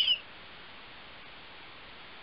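A brief high squeak that falls in pitch right at the start, then only a steady faint background hiss.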